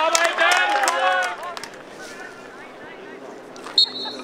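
Several voices shouting loudly on a football pitch for about the first second, then a quieter open-air background. Near the end comes a sudden sharp sound with a brief high steady tone.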